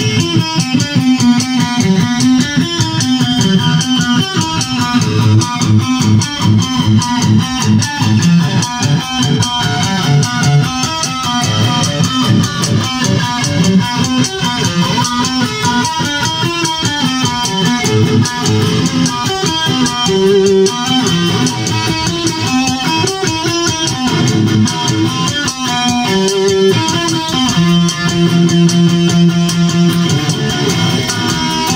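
Instrumental music led by plucked electric guitar over a low bass line, playing steadily throughout.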